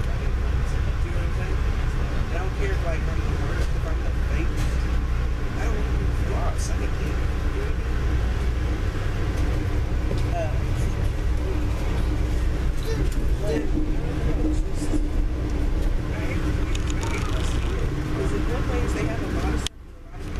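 Inside a moving passenger train: the steady low rumble of the car rolling on the rails, with a constant hum and scattered light clicks and rattles. The sound drops out sharply for a moment near the end.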